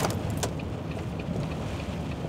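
Steady low rumble of a vehicle's engine and road noise heard from inside the cab while driving, with two sharp clicks in the first half-second.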